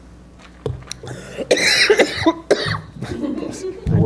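Coughing picked up by a handheld microphone, after a few knocks from the microphone being handled about half a second in.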